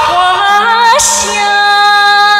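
A woman singing into a handheld microphone with instrumental accompaniment underneath. Her voice slides upward about a second in, then holds a long note.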